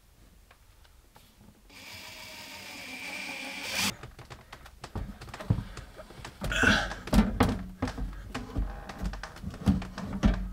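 A cordless drill runs steadily for about two seconds, getting louder and stopping abruptly, as it drives a mounting screw into the wall. This is followed by knocks and thumps from the inverter being handled against the wooden wall.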